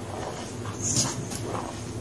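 Gym chalk squeezed and crumbled by hand in a bowl of loose powder: soft crunching and rustling, with a few sharper crunches about a second in.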